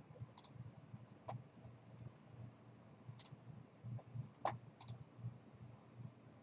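Faint computer mouse clicks, a handful spaced irregularly, the sharpest about three and four and a half seconds in, over a low steady hum.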